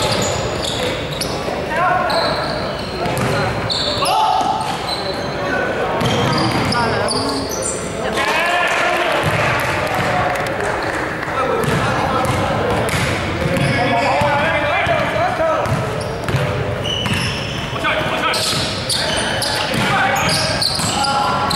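Basketball game on a wooden indoor court: players' voices calling out over the ball bouncing and other sharp knocks, with the echo of a large sports hall.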